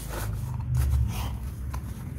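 Rustling and handling noise as tissue-paper wrapping is pulled aside and a small metal preamp chassis is lifted out of its cardboard box.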